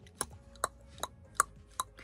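Five short, sharp clicks, irregularly spaced at about two to three a second.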